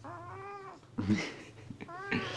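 Domestic cat giving one drawn-out meow that rises and then falls in pitch, lasting under a second, with a short laugh from a man just after it.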